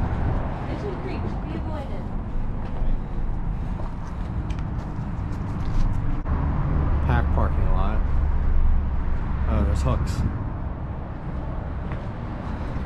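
Low rumble of road traffic crossing the highway overpass overhead, swelling heavily about six seconds in and easing off around ten seconds, with brief scattered voices.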